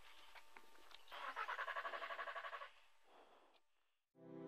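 Faint starter motor cranking the stalled Skoda rally car's engine in quick even pulses, about nine a second, for about a second and a half without it catching: the engine won't start.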